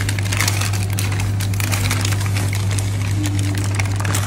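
Newspaper food wrapping being unfolded and handled, crinkling and rustling with many small crackles, over a steady low hum.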